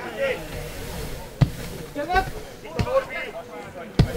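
A football being kicked: two sharp thuds, about one and a half seconds in and near three seconds, with short bursts of voices between them.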